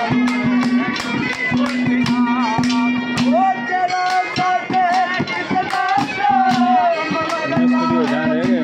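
Live Haryanvi ragni folk music: a harmonium holding a steady drone under a melody, with hand percussion striking several times a second. A wavering melody line comes in about three and a half seconds in.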